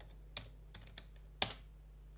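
A few keystrokes on a computer keyboard as a short command is typed and entered, with the loudest about one and a half seconds in.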